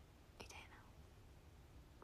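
Near silence with a low room hum, broken about half a second in by one short, faint breath.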